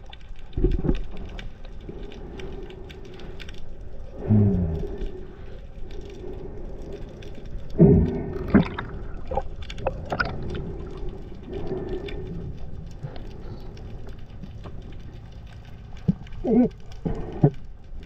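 Underwater sound from a diver's camera: a steady hum with scattered small clicks and crackles. A few short muffled vocal sounds from the diver glide downward in pitch, about four seconds in, around eight seconds in, and again near the end.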